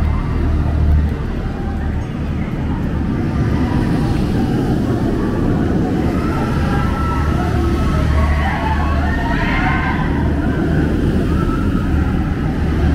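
A steady, loud low rumble that swells and eases, with faint voices in the background.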